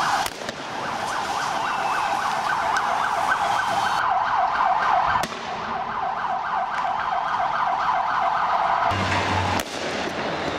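Police riot-vehicle siren wailing in a fast, rapidly repeating warble, cutting off about a second before the end, leaving street noise.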